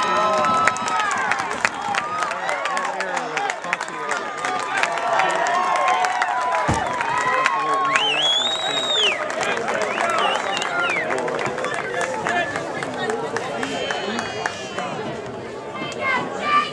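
Overlapping voices of spectators and players at a baseball game chattering and calling out, with one high, drawn-out shout about eight seconds in and a single dull thump just before it.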